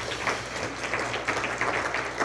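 Audience applauding, an even patter of many hands clapping.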